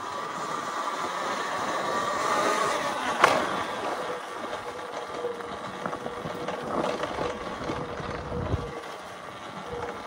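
Talaria Sting MX4 electric dirt bike ridden along a dirt trail: a steady motor whine over tyre and rattle noise, with one sharp clack about three seconds in.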